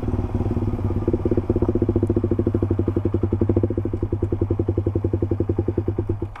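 Motorcycle engine running off the throttle, its exhaust beat pulsing evenly and gradually slowing as the bike decelerates at low speed.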